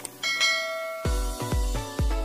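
A mouse click, then a short bell-like chime of the notification-bell sound effect. About halfway through, electronic music with a steady kick-drum beat comes in.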